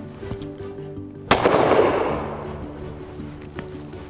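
A single shotgun shot, about a second in, from an old side-by-side loaded with steel-shot paper cartridges, followed by a long echo that fades over about two seconds. Background music plays underneath.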